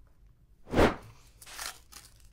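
Paper wrapper of a roll of quarters being torn open: one loud rip a little under a second in, followed by softer crinkling of the paper.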